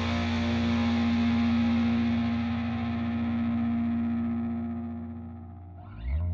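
Raw black metal: a sustained, distorted electric guitar chord rings out and slowly fades away. A new guitar part comes in right at the end.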